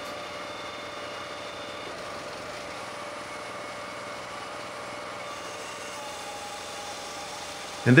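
Firewood processor's engine running steadily, with faint steady tones over an even hum.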